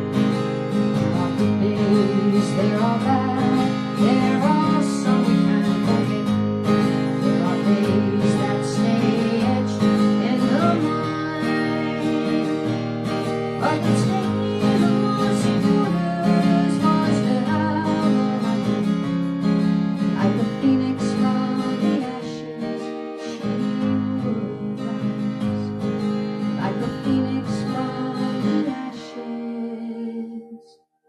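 Steel-string acoustic guitar strummed and picked in a steady rhythm as a song accompaniment, getting somewhat quieter in the last quarter.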